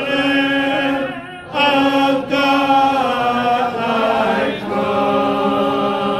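Church congregation singing an invitation hymn a cappella, men's and women's voices together holding long notes, with a short breath pause about a second and a half in.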